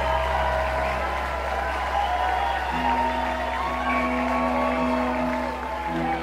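Live rock band playing out a song's ending: long held chords over a steady low bass drone, with a lower sustained note coming in partway through, and faint crowd noise underneath.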